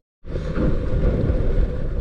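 A moment of silence at the cut, then steady wind noise on the microphone with choppy water around a small anchored fishing boat.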